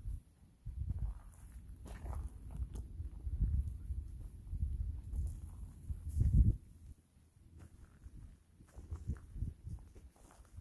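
Footsteps walking through dry leaf litter, heard mostly as irregular low thuds, strongest in the first two-thirds and quieter after about seven seconds.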